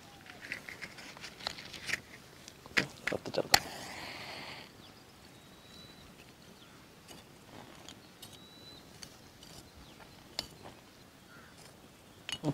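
A few sharp clicks, then about a second of hiss as a flame is struck to light a charcoal fire kindled with dry leaves. After that come only faint scattered ticks and rustles.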